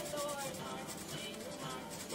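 Felt-tip marker colouring on paper, faint back-and-forth rubbing strokes, with faint tones underneath.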